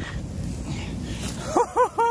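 Low, irregular rumbling and rustling close to the microphone as the man moves right in front of it, then two short yelps from a man's voice near the end.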